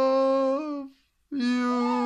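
Cocker Spaniel howling in long, steady held notes: one note ends about a second in, and after a short break a second note starts at the same pitch.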